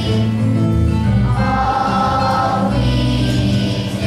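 Children's choir singing in unison over an instrumental accompaniment with a low bass line.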